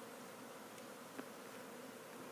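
Faint, steady buzzing of a honeybee colony around opened hive boxes, with one small click about a second in.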